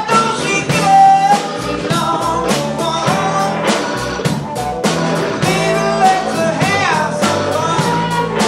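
Live blues-rock band playing: electric guitars, electric bass and a drum kit.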